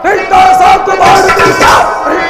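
Loud, drawn-out singing in a Kannada stage-drama song, with a harmonium holding steady notes underneath.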